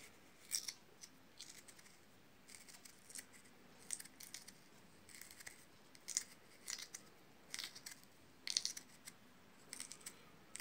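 Raw spiral-cut potato being spread apart along a wooden skewer by hand: faint, irregular crisp scraping and creaking as the slices slide and rub on the stick, about one or two short scrapes a second.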